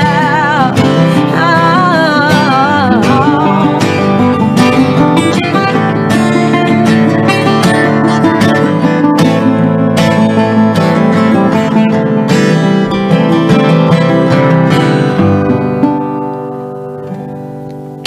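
Closing bars of a live acoustic song: an acoustic guitar strumming, with a sung line in the first few seconds, then the strumming stops and the last chord rings out and fades over the final couple of seconds.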